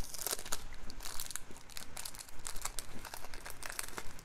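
Paper packaging crinkling and rustling in the hands as it is opened, in a quick run of small crackles.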